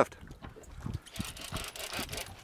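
Faint sea water splashing and lapping against the hull of a small boat, with a couple of soft low knocks in the first half.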